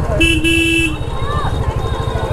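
Royal Enfield Classic 350 single-cylinder engine thumping steadily at low riding speed, with one short vehicle horn toot lasting under a second near the start. Faint voices of the street crowd come and go.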